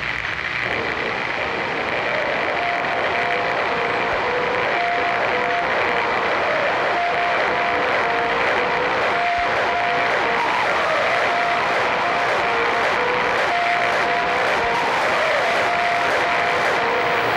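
Doomcore electronic track in a passage of thick, steady noise like engine roar, with a held high tone over it and no beat. About two and a half seconds in, a faint two-note figure starts alternating through the noise.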